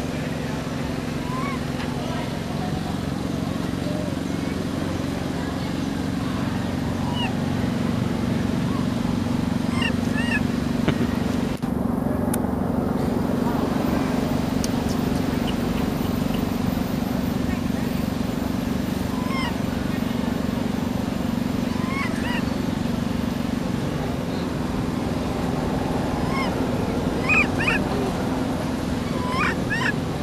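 A steady low engine-like hum with an even level, with scattered short high-pitched calls over it, more of them near the end.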